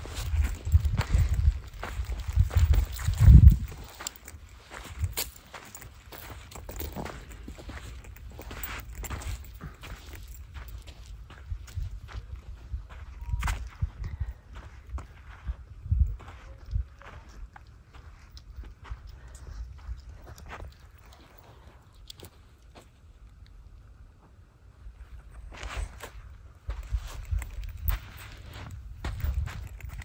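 Footsteps on sandy, pebbly ground, irregular steps throughout, with low rumbling on the microphone that is strongest in the first few seconds.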